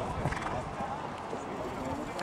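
Hoofbeats of a show-jumping horse cantering on grass, with people talking in the background.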